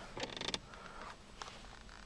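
2005 Dodge Magnum's plastic center console lid creaking on its hinge as it is opened: a short rattly creak that ends in a click about half a second in, then a faint tick.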